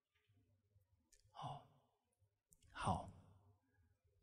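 A man's breaths close to a handheld microphone in a pause between sentences: two short breaths about a second and a half apart, the second louder, each just after a faint mouth click.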